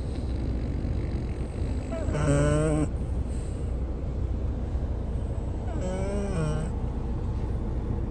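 A sleeping French bulldog snoring: two short, pitched, wavering snores, a strong one about two seconds in and a fainter one about six seconds in, one with each breath. Under them is the steady low rumble of the moving car, heard from inside the cabin.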